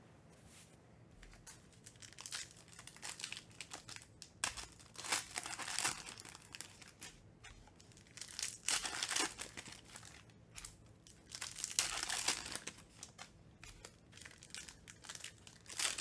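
Foil wrapper of a trading-card pack crinkling and tearing as it is ripped open by hand, in several bursts of crackly rustling, the loudest about twelve seconds in.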